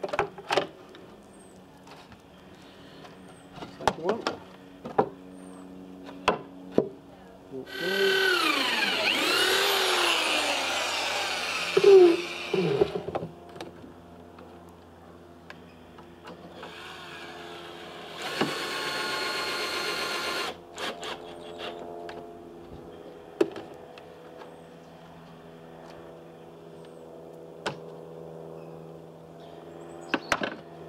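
Cordless drill driving screws into a wooden frame. The first run lasts about five seconds, its motor pitch wavering and falling as the screw bites. A shorter, steadier run follows later, with scattered clicks and knocks of tools and timber being handled.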